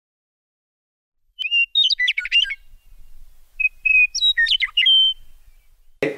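A bird chirping in two short phrases. Each opens with a held whistled note, then breaks into quick up-and-down chirps. It starts out of silence about a second and a half in.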